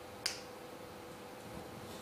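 A single short, sharp click about a quarter of a second in, over a faint steady room hum.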